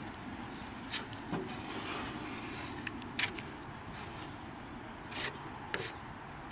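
Plastic spreader smearing Kevlar-reinforced filler over a fiberglass canoe hull: a quiet, soft scraping with a few short, sharper scrapes about one, three and five seconds in.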